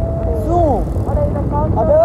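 Low rumble of a motorcycle engine and wind on the microphone while riding, with a voice calling out about half a second in and again near the end.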